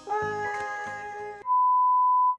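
A held, steady-pitched note over light background music for about a second and a half, then a sudden switch to a loud, pure, steady electronic beep tone, a bleep sound effect.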